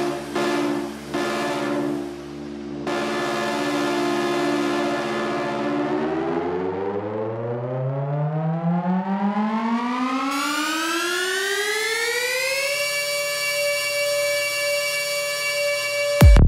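Psytrance breakdown with no drums: a sustained synthesizer chord, then a rising synth sweep that starts about six seconds in, climbs for about seven seconds and holds a high chord to the end.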